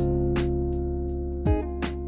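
Background music: held chords over a drum beat.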